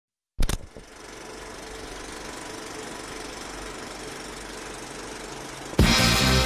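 A sharp click, then a steady, fast mechanical rattle of a small machine running evenly for about five seconds; music comes in loudly just before the end.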